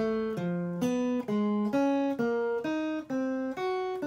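Clean-toned electric guitar playing single alternate-picked notes, about two a second at an even pace, in a chromatic warm-up exercise. The notes cross back and forth between two adjacent strings, one finger per fret.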